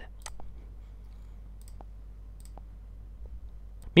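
Computer mouse clicking, about half a dozen faint clicks with some in quick pairs, over a low steady hum.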